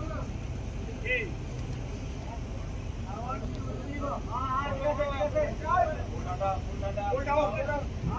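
Several men talking and calling out over one another, getting louder from about three seconds in, over a steady low outdoor rumble. There is a short high chirp about a second in.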